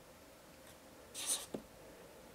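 A pen scratching briefly on paper a little over a second in, followed by a light tick, against quiet room tone.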